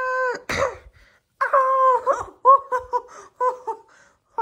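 A person's voice crying out: a long held wail that breaks off just after the start and a short breathy grunt, then a run of short wailing cries on much the same pitch.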